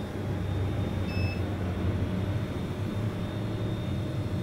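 Steady low hum, with one short high beep about a second in from an LED clock and countdown-timer display's buzzer, acknowledging the OK press on its remote.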